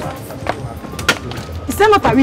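Background music with a few sharp footsteps of heeled sandals on brick paving, about half a second and a second in. A voice starts near the end.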